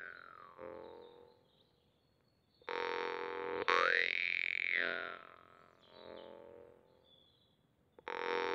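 Bass jaw harp (Tatar kubiz) being plucked. A low drone rings out under a bright overtone that the player's mouth sweeps up, holds and lets fall. A phrase dies away into a short gap, and a new one is struck about two and a half seconds in, with a second pluck a second later, before it fades again.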